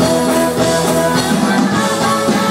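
A rock band playing live, loud: electric guitar over a drum kit, with held notes changing pitch.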